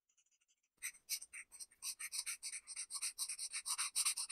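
Felt-tip marker tip scratching on paper in rapid short back-and-forth strokes as it fills in small squares. The strokes begin about a second in, after a near-silent pause.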